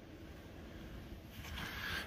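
Faint, steady background hiss of the outdoor air, with no tapping or hammer strikes, growing slightly louder near the end.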